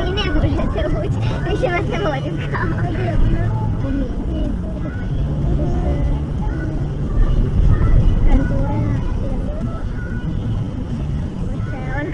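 Indistinct talking inside a moving car, over the steady low rumble of the car's engine and tyres heard from inside the cabin.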